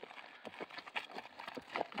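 Faint, irregular hoofbeats of horses being ridden on a dirt road.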